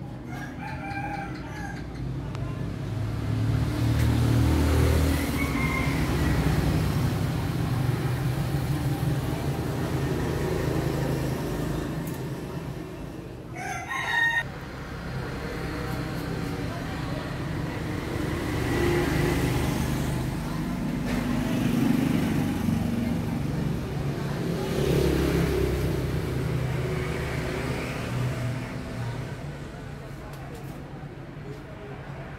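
Bướm chân xanh fighting rooster crowing, over a steady low rumble, with a brief clatter near the middle.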